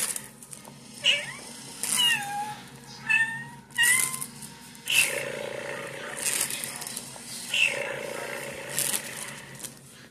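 Cat meowing: a few short meows with gliding pitch about two to four seconds in, among brief noisy bursts that recur about every second.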